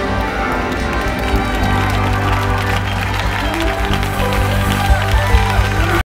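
Large church choir singing with instrumental accompaniment over a steady bass, with hand-clapping throughout that grows heavier near the end.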